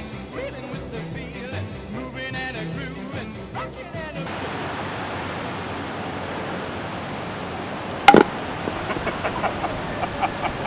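Background music that stops abruptly about four seconds in, giving way to open-air ambience; about eight seconds in, a single sharp, loud crack of a baseball bat hitting a pitched ball in batting practice.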